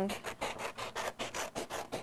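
Scissors cutting a wavy edge into a large sheet of black paper: a quick series of short snips, several a second.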